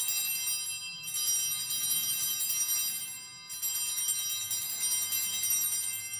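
Altar bells (Sanctus bells) jingling in repeated shakes, a fresh ring about a second in and another about three and a half seconds in, each ringing on and dying away. They mark the elevation of the consecrated host.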